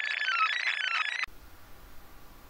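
A quick run of high, bell-like chime notes lasting just over a second, which cuts off suddenly and leaves faint room noise.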